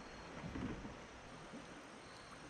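Quiet on-the-water ambience from a kayak: a faint steady hiss of water and light wind, with a brief soft swell of low sound about half a second in.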